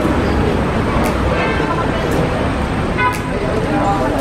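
Busy market ambience: crowd chatter and steady background din, with short pitched calls or toots cutting through about a second and a half in and again near the end.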